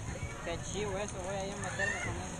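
People's voices calling out around a swimming pool: several wavering, drawn-out calls, with a short rising shout near the end.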